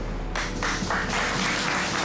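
A group of sailors applauding, the clapping starting about a third of a second in and carrying on steadily.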